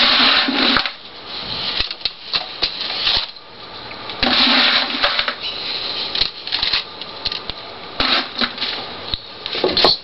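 Pumice-stone concrete mix being handled and packed into a form by hand: gritty scraping and clattering of pumice stones, in several louder bursts at the start, about four seconds in and about eight seconds in.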